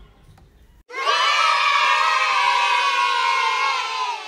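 A group of children cheering together, one long held shout of many voices that starts abruptly about a second in and stays steady.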